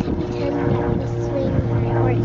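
A steady engine drone with a constant low hum runs throughout, under a child's quiet voice.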